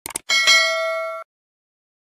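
Notification-bell sound effect for a subscribe animation: a couple of quick clicks, then a bright bell ding that rings for about a second and cuts off sharply.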